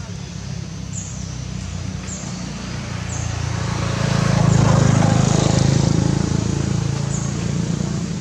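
A motor vehicle passing: its engine hum grows louder, peaks about halfway through, then fades away.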